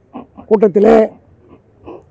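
Speech only: a man's voice saying a short phrase, with brief pauses and small vocal sounds around it.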